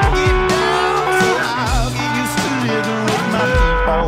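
Electric guitar playing lead lines over a full-band rock recording with bass and drums, some notes wavering in pitch.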